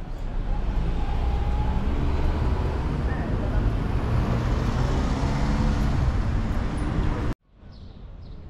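Motor vehicle traffic passing close on a city street: a loud, steady engine and road rumble that swells up in the first second, then cuts off suddenly near the end.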